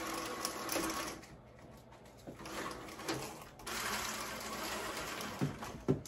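Horizontal window blinds being raised by their cord, the slats clattering together in a few stretches as they stack up. There are a couple of short knocks near the end.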